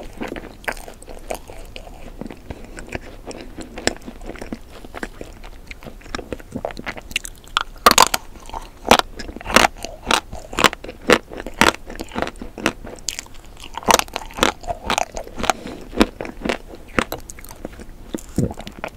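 Close-miked chewing of frozen ice cream cake, with crisp crunching bites. From about seven seconds in, the crunches come in a quick, steady run of about three a second, pause briefly, then pick up again.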